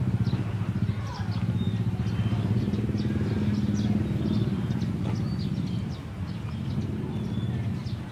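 A small engine running steadily at a low, even pitch, easing off slightly about six seconds in.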